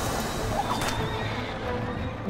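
A horse whinnying over a busy, noisy soundtrack with music underneath.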